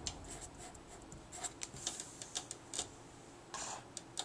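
Felt-tip marker writing on paper: faint, short scratching strokes, with a slightly longer rub near the end.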